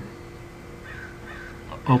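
A pause in speech filled with a steady faint hum of room tone, with two faint brief sounds about a second in.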